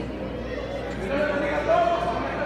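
Crowd of guests talking in a large echoing hall. In the second half one drawn-out, wavering high voice rises over them and grows louder.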